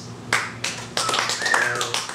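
A quick irregular run of sharp hand claps and taps in a small room. A short vocal exclamation falling in pitch comes about one and a half seconds in.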